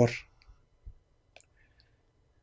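A man's voice trails off, then near silence broken by four faint, brief clicks spread over about a second and a half.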